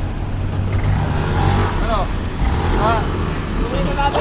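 Small motor scooter engine idling with a steady low rumble.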